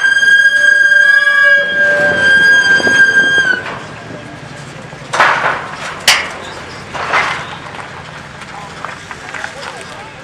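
A loud, shrill, steady high-pitched tone, held for about three and a half seconds before it dips and stops. Then a few short hissing bursts and one sharp crack over a low steady background.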